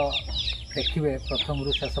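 Desi chickens calling in a rapid run of short, high peeps that fall in pitch, several a second, with a man talking over them.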